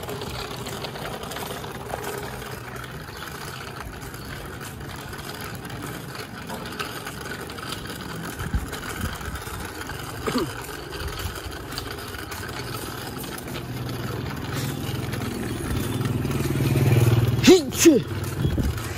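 Street ambience with a motor vehicle's engine running steadily, growing louder over the last few seconds as it comes close. Brief short voice sounds come in about ten seconds in and again near the end.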